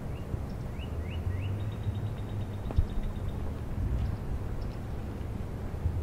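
Outdoor ambience with a steady low rumble and a small bird calling. It gives a few short rising chirps, then a quick high trill that stops about three seconds in. A single sharp knock sounds just before the trill ends.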